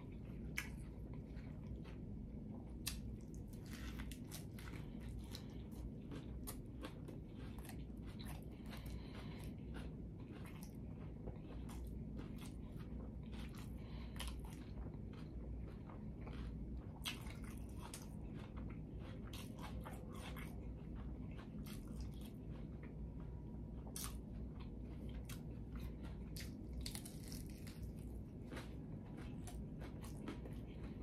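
Chewing and biting into a smash burger taco with a crisp fried tortilla shell, with many short crunches throughout.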